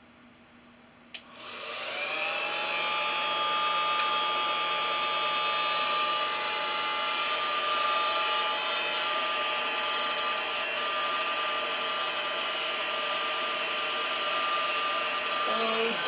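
Handheld hair dryer switched on with a click about a second in, its motor spinning up with a rising whine and then running at a steady high whine over the blowing air.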